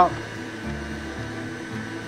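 Stand mixer motor running steadily, driving its meat grinder and sausage-stuffer attachment as seasoned pork is fed into the hopper, a constant hum with a few steady tones.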